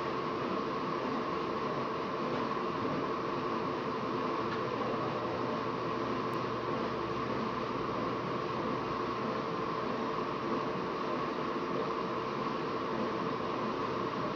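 Steady fan noise: an even whir and hiss with a faint constant hum underneath, unchanging throughout.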